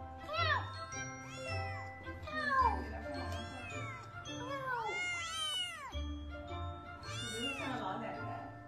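A kitten meowing repeatedly, about six high calls that each rise and fall in pitch, over background music with a steady beat.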